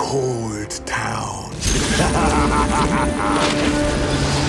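Film soundtrack mix: a falling sweep for the first second and a half, then a sudden full entry of dramatic orchestral score with held notes, over mechanical clatter effects.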